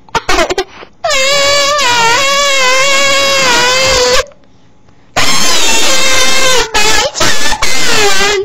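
A young girl's loud, high-pitched squeal held about three seconds with a wavering pitch, then a second, choppier one, right up against the microphone so that it distorts.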